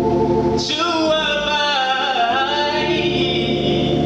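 A man singing a gospel song into a microphone, holding long notes and bending them up and down in a wordless run.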